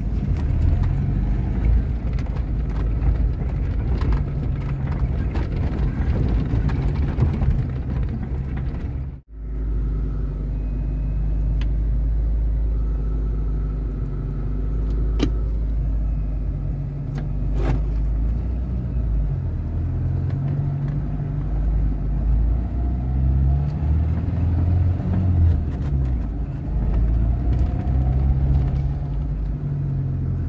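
Suzuki Vitara (Sidekick) 1.6-litre 8-valve four-cylinder engine running at low revs in low-range four-wheel drive, heard from inside the cabin, with the engine note rising and falling as it crawls over rough ground. A few sharp knocks come through, and the sound cuts out for a moment about nine seconds in.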